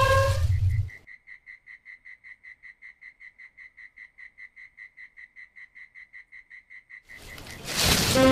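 Faint, steady chirping of a night creature at one high pitch, about five or six chirps a second, as night-time rural ambience. A loud low rumble with music ends about a second in, and music swells in again near the end.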